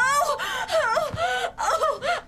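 A woman wailing and whimpering without words, in short, high cries that swoop up and down in pitch.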